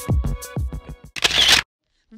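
Background music with a steady drum beat, ending in a short burst of noise, after which the sound cuts out suddenly.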